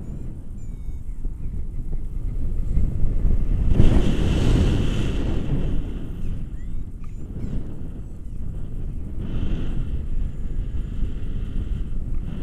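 Airflow of a paraglider in flight buffeting the action camera's microphone: a steady low wind rumble, with a stronger gust about four seconds in.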